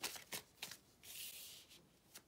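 Tarot cards being handled and shuffled by hand, faintly: a few soft card clicks, then a short soft sliding hiss about a second in.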